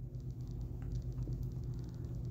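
Faint small ticks and crackles of the thin backing liner of a 3M adhesive ring being peeled off a watch bezel seat with tweezers, over a steady low hum.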